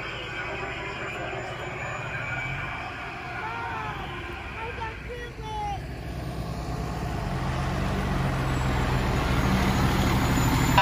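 A fire department ladder truck's diesel engine approaching, its low rumble growing steadily louder over the last few seconds as it pulls up close.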